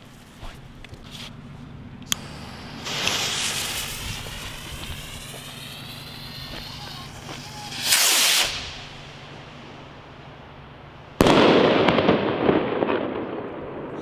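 Mid-size skyrocket: its fuse hisses for several seconds, then the rocket launches from the tube with a short loud rush about eight seconds in. About three seconds later it bursts overhead with a sudden loud bang that dies away over a second or two.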